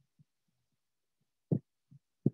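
Mostly near silence on a video-call line, with faint low blips and one short low thump about a second and a half in, then a fainter one near the end.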